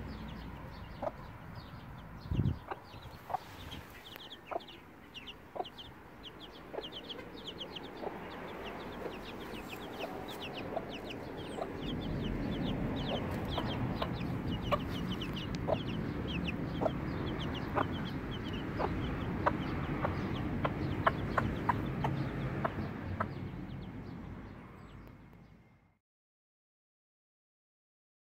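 Week-old Silkie chicks peeping continuously, many short high falling peeps a second, with the Silkie hen clucking softly among them. The sound fades out near the end.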